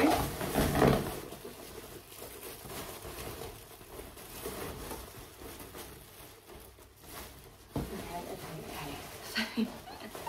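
A large plastic drawstring bag packed with inflated balloons rustles as it is handled and tied shut. The rustling is loudest in the first second, then quieter, with one sharp knock near the end.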